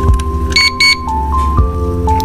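Two quick high-pitched beeps from a small digital flip timer, a little over half a second in, over soft background music with sustained notes.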